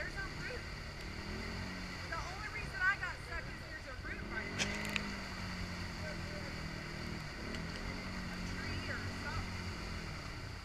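ATV engine running and revving as it pushes through a flooded mud hole, its pitch rising and falling. A couple of sharp clicks come about halfway through.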